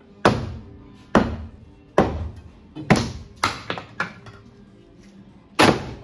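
Long steel pry bar striking a wooden door header from below: about eight sharp knocks at irregular spacing, the last one near the end.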